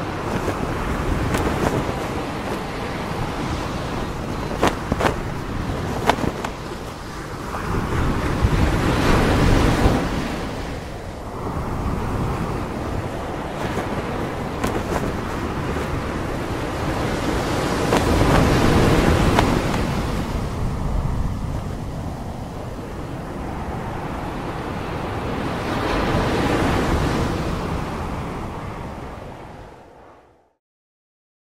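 Ocean waves breaking on a beach, a steady rush of surf that swells up about every eight seconds, with a few sharp clicks about five seconds in; the sound fades out at the end.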